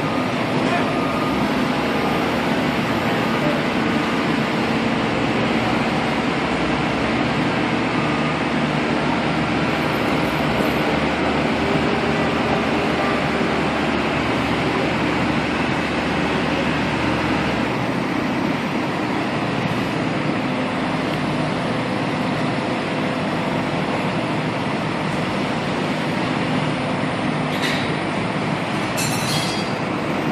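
Diesel engines of two mobile cranes running steadily while they hold a tandem lift, a dense continuous rumble with a faint hum; the deepest part of the rumble drops away about two-thirds of the way through.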